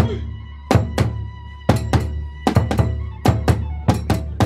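Kagura hayashi percussion: sharp strikes on a large kagura barrel drum together with small hand cymbals, each stroke leaving a ringing tail. The strokes come in a slow, uneven beat, with some quick doubled strokes in the second half.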